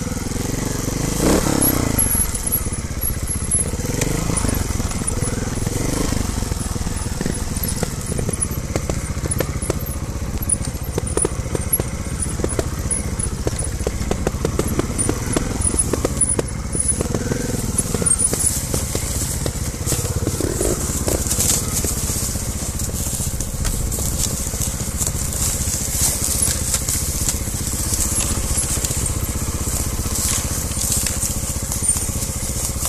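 Trials motorcycle engine running at low revs with a few brief rises and falls in pitch as it creeps down a steep slope. Frequent small cracks and knocks from dry leaves, twigs and stones under the tyres run over it.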